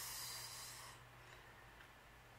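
A person's breath blown out in a short breathy hiss, fading away about a second in, leaving faint room tone.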